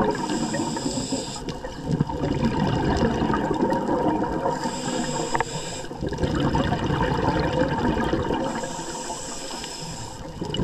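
Scuba diver breathing through a regulator underwater: three hissing inhales, each over a second long, with rumbling exhaled bubbles between them.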